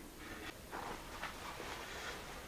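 Quiet room tone with a few faint, soft taps.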